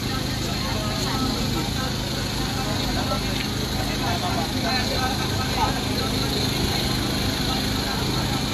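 A steady low mechanical hum, like an idling engine, with scattered voices of people talking in the background.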